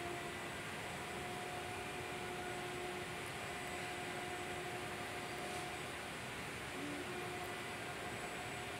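Tomato-onion gravy cooking in a steel wok on a gas stove: a steady soft hiss, with a faint even hum underneath.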